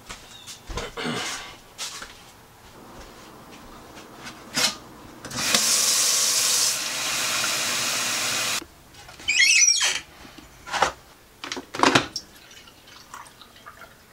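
Tap water running steadily into a sink and a plastic cup for about three seconds, stopping abruptly, followed by a brief louder burst with a wavering pitch and several scattered knocks and clicks of handling.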